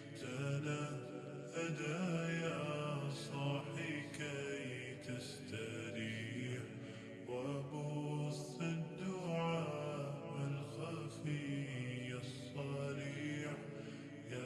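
Background music: a voice singing a chant-like melody with held notes that change pitch every second or so.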